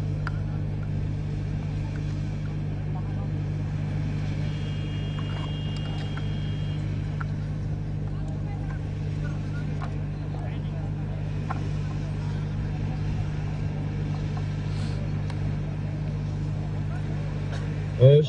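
Steady low hum with faint background noise and scattered faint clicks. A brief high steady tone sounds from about four and a half to seven seconds in.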